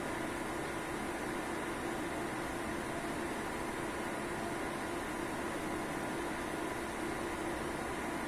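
Steady whir of cooling fans and ventilation: an even hiss with a low hum under it.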